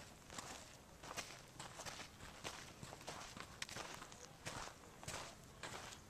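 Faint footsteps crunching over gritty dark ground and grass, irregular, roughly one step a second.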